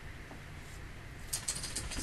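A quick run of light clicks, eight or so in under a second, starting about one and a half seconds in, over a low steady hum.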